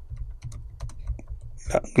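Typing on a computer keyboard: a quick, irregular run of keystroke clicks over a low hum, with a voice coming in near the end.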